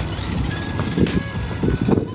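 Razor X Cruiser electric skateboard rolling over asphalt: a steady low rumble from its wheels, with a couple of heavier bumps about a second in and near the end.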